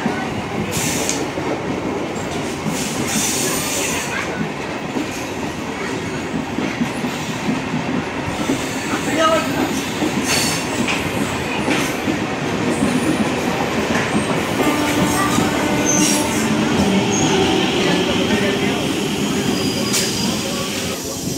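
Passenger train coaches rolling past the platform as the train pulls out of the station: a continuous loud rumble of wheels on rail, with irregular clicks and knocks from the wheels over rail joints.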